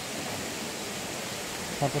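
A stream running, a steady even rush of flowing water. A man's voice starts near the end.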